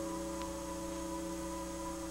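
Soft piano background music: a held chord slowly dying away between notes, over a faint steady hum.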